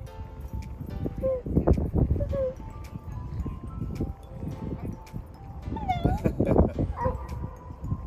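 A dog whining in a few short high notes as it jumps up in an excited greeting, over steady background music.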